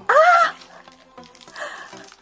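A woman's short exclamation, "aah", rising in pitch, then soft crinkling of a clear plastic bag being handled.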